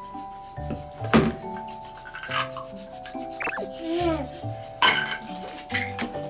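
Background music of held, sustained notes, over plastic toy food and a plastic storage box being handled, with two sharp plastic knocks, about a second in and near five seconds.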